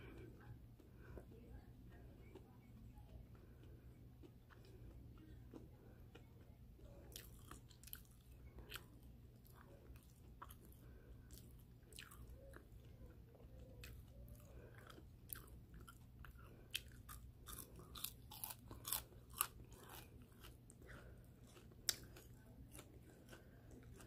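Close-up mouth sounds of someone chewing crunchy breaded shrimp: faint, crisp crunches that come thickest in the second half, over a low steady hum.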